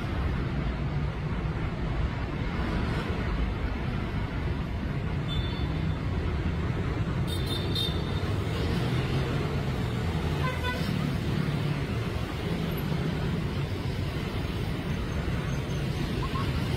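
Steady city road traffic with engines running close by, and a few brief high-pitched toots, the clearest about seven and eleven seconds in.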